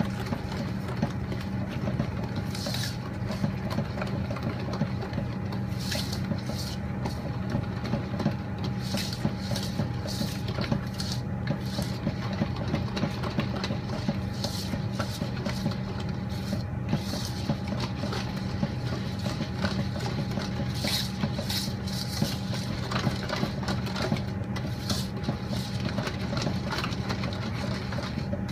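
A wire whisk stirring and scraping a thick chocolate mixture around a stainless steel bowl, with irregular scraping ticks against the metal, over a steady low mechanical hum.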